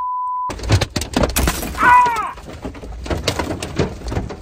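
A short censor bleep, then hailstones clattering on the vehicle. About a second and a half in there is a sharp crash as a hailstone comes in through the broken-out rear window, followed at once by a man's loud pained cry.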